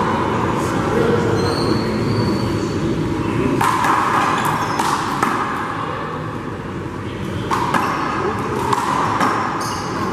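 Rubber handball being hit against the wall and bouncing on the court floor in a rally: a series of sharp smacks from about three and a half seconds in, over a steady background noise.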